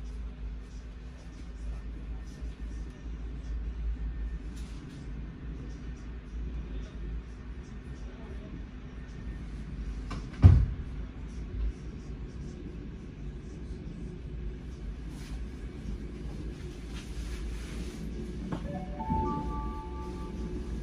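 Cabin of an ÖBB class 4020 electric multiple unit pulling out of a station and gathering speed, with a steady low rumble. About halfway through there is one sharp, loud knock. Near the end comes a short group of steady tones.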